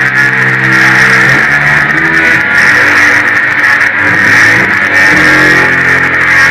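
Electric guitar played loud through a small combo amp: sustained chords and notes that change every second or two, over a constant noisy drone.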